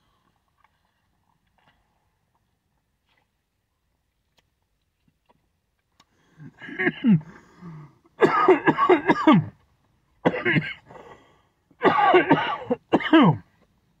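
A man coughing hard in repeated fits, starting about halfway through, after a swallow of energy drink went down the wrong way; before that there is near silence while he drinks.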